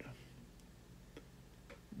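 Near silence: room tone with a faint low hum and three faint, irregular clicks.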